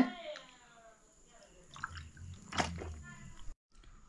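A man drinking from a plastic water bottle: faint sloshing and swallowing, with a short click a little past halfway.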